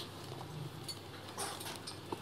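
Paperback manga volume being handled and its cover opened, a faint paper rustle about one and a half seconds in, over a low hum.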